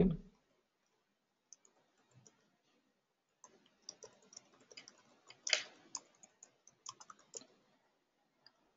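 Faint, irregular clicking and tapping of computer keys and mouse over a low rustle, starting about three and a half seconds in after a near-silent stretch.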